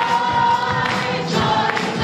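A choir singing a worship song with instrumental accompaniment, holding one long high note through the first second.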